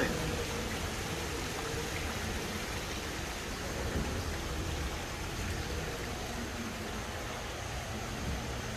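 Steady rushing hiss with a low hum underneath, the running ambience of an indoor boat ride gliding along its water channel.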